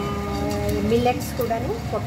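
Speech: a voice talking, holding one tone briefly near the start.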